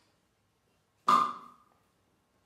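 A single sharp strike on a resonant object, leaving a short ringing tone that dies away within about half a second.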